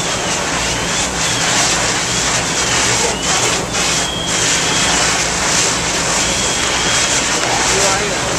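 Fire apparatus engines and pumps running steadily at a working fire, a loud low hum under a constant rushing hiss, with faint high whistling tones coming and going.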